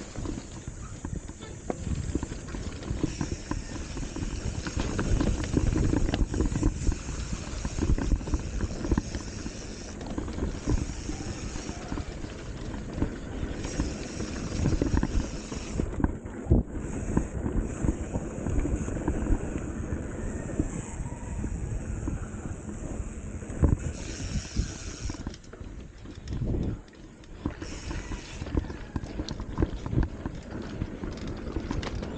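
Commencal Meta HT hardtail mountain bike rolling fast over a dirt trail: a steady low tyre rumble with frequent knocks and rattles from the bike over bumps.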